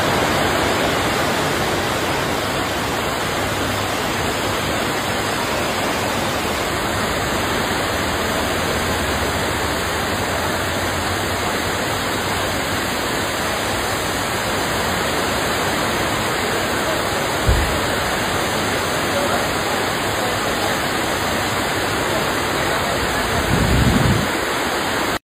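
Heavy rain falling steadily as a dense, even hiss, with a brief low thump about seventeen seconds in and a low rumble near the end.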